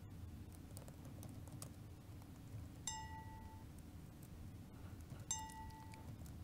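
Faint laptop keyboard clicks as keys are pressed, over a low steady hum. Two short electronic beeps, each under a second long, sound about three seconds in and again just after five seconds in.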